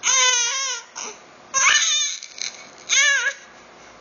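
Baby crying in three short, high, wavering wails about a second apart. It is fussy crying that the mother calls 'dengo', fussing for attention.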